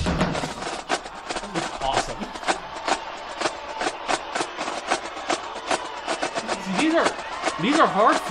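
Marching drumline playing a battle cadence: rapid, crisp snare and tenor drum strokes in a steady, driving rhythm, with a voice coming in near the end.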